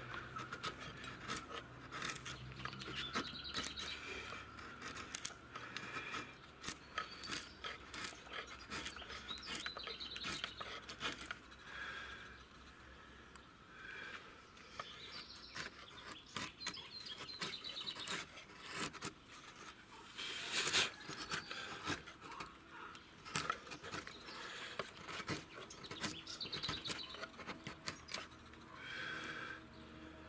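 Flat woodcarving chisel pushed by hand through an old weathered board, slicing and scraping the wood. Many sharp, irregular cracks come through as fibres and chips break away.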